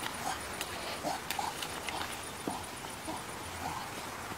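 Faint, short animal calls, a handful of small squeaks or grunts spaced about half a second apart, with scattered light clicks and rustling.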